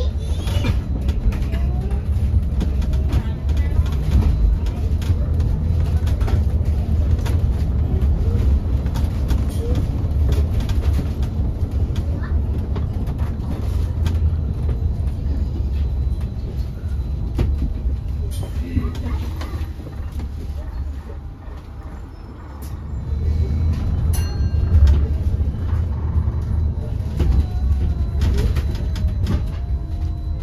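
Interior ride noise on the upper deck of a Wright StreetDeck Electroliner battery-electric double-decker bus on the move: a steady low rumble from road and running gear, with knocks and rattles from the body and fittings. The rumble drops away for a couple of seconds about twenty seconds in, then builds again.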